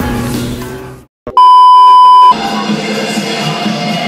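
Background music fades out into a brief silence, then a loud, steady electronic beep tone rings for about a second and cuts off. A crowd murmurs with music behind it after the beep.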